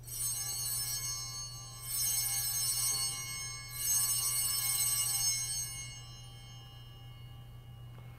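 Altar bells rung three times as the host is elevated at the consecration, each high, shimmering ring fading before the next and the last dying away about six seconds in.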